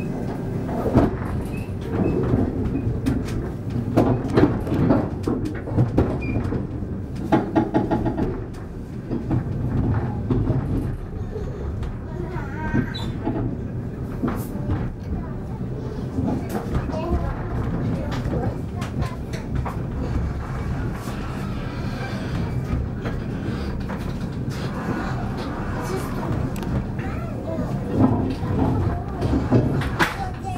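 Train running heard from inside a passenger car: a steady rumble of wheels on the rails with scattered clicks. Indistinct voices come and go over it.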